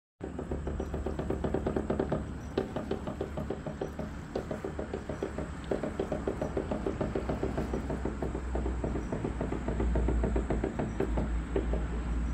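Fishing boat's engine running, a steady low drone with a rapid, uneven chugging knock over it, getting somewhat louder near the end.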